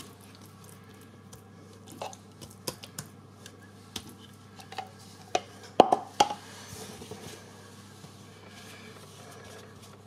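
Soft, wet handling sounds of a spatula spreading wild garlic pesto over rolled yeast dough, and of the dough being handled. These are faint scrapes and light clicks, with a louder cluster about six seconds in. A low steady hum runs underneath.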